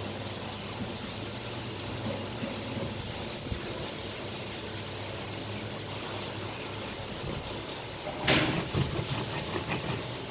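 Electric pedestal fan running steadily, a low hum under a hiss of moving air. About eight seconds in, a sharp plastic knock as the lid of a plastic hand citrus juicer is pushed down onto a lime half on the reamer, followed by a few smaller knocks and scrapes of the squeezing.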